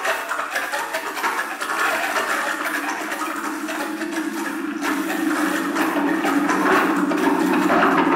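Electroacoustic tape music from 1969: a dense noise texture flecked with fine crackles. From about five seconds in, a lower band of sound grows stronger and the whole becomes slightly louder.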